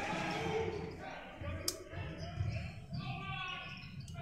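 Basketball bouncing on a hardwood gym floor in an irregular rhythm during play, with a brief sharp high squeak about one and a half seconds in.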